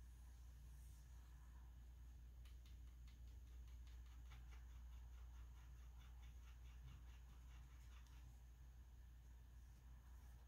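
Near silence over a low steady hum, with a faint, quick run of scratches, several a second, from a paintbrush scrubbing in a watercolor paint pan; it starts about a quarter of the way in and stops near the end.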